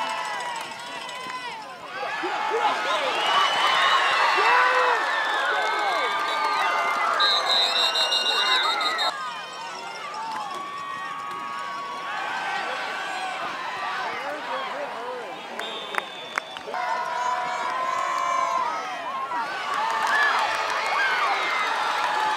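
Football stadium crowd cheering and shouting through a play, many voices overlapping, loudest in the first half. A short, high, trilled tone sounds about seven seconds in.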